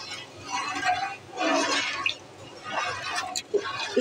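A steel spoon stirring a thin gram-flour (besan) and water kadhi batter in a pot, the liquid sloshing and swishing in a few separate swirls. It is kept stirred while it heats toward the boil so that the gram flour does not form lumps.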